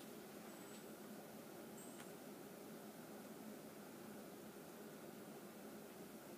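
Near silence: steady room tone and hiss, with one faint click about two seconds in.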